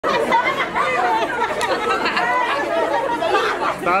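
A group of women chattering and laughing all at once, many voices overlapping, with a voice calling out "down" near the end.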